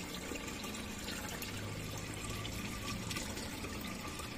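Water running and trickling steadily, with a faint low hum coming in about a second and a half in.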